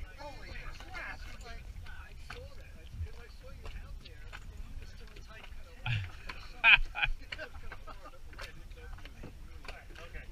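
Indistinct talk from people close by, loudest in a short outburst about seven seconds in, over a steady low rumble and a few small knocks.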